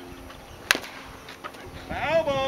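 A single sharp smack of a pitched baseball arriving at home plate about two-thirds of a second in, over faint background hum.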